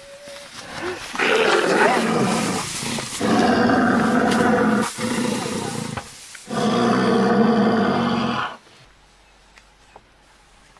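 Lion growling loudly in four long, harsh bursts of a second or two each, the third one quieter, stopping abruptly near the end.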